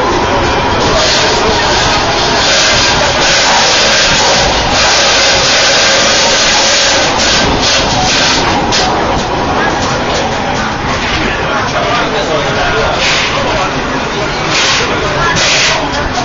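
Several people talking over a steady rushing noise, with a louder hiss through the first seven seconds or so, as in a busy funicular car.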